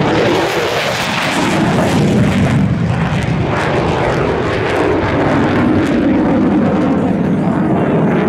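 A USAF Thunderbirds F-16 Fighting Falcon jet passing low, loud jet engine noise. The tone sweeps as it goes by over the first few seconds, then settles into a steady rumble.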